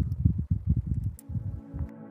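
Low, uneven rumbling on the microphone of a handheld camera filming outdoors, thinning out near the end, with faint steady tones of music starting to come in.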